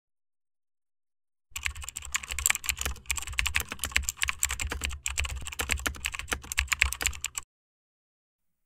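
Fast typing on a computer keyboard, a dense run of quick keystrokes that begins about a second and a half in and stops shortly before the end.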